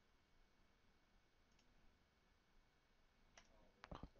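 Near silence: room tone, with two faint computer-mouse clicks near the end.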